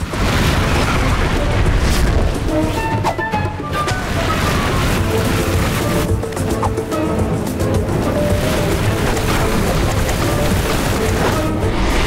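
Cartoon background music over a loud, steady rushing rumble, the sound effect of a tornado whirling. It starts suddenly and is heaviest in the low end.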